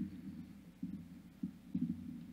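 Electric keyboard playing soft, low notes, a new note or chord struck several times, the quiet opening of a song's intro.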